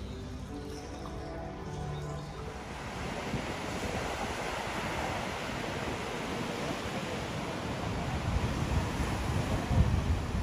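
Music for the first two or three seconds, then sea waves breaking on a sandy beach, a steady rushing surf, with wind buffeting the microphone near the end.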